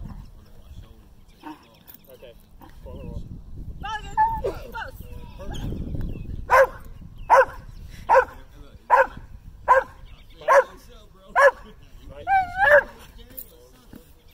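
Dutch Shepherd barking at a protection helper: some whines and yips first, then seven sharp barks about one every 0.8 seconds, ending with a higher double bark.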